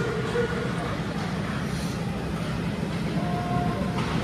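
Indoor ice rink during a hockey game: a steady low rumble, with a few brief, faint, distant shouts from players.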